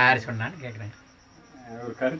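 A man's voice speaking, a short phrase at the start, a pause in the middle and speech again near the end, with a faint steady high-pitched pulsing sound behind it.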